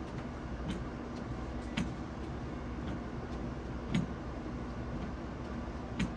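Steady low outdoor background hum, like distant traffic or a running air-conditioning unit, with a few faint scattered clicks.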